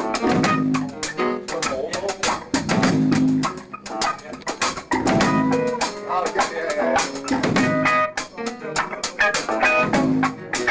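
Electric guitar and drum kit jamming together, with the drums hit densely and steadily under the guitar notes.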